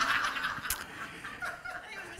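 Light laughter, dying away.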